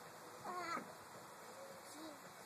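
A short, wavering, high-pitched meow-like vocal call about half a second in.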